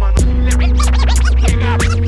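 Hip hop beat with turntable scratching: quick back-and-forth cuts over a steady bass line, held synth notes and drum hits.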